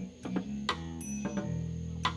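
Live band's soft backing music in a gap between sung lines: held low chords with a few light, sharp drum taps.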